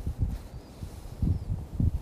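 Wind buffeting the microphone, an uneven low rumble that comes and goes in gusts.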